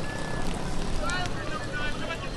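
Outdoor street noise: a steady low rumble with wind on the microphone, and distant raised voices calling out about a second in and again near the end.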